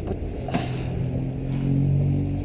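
An engine's steady low drone comes in about half a second in and grows louder toward the end, with a short click as it begins.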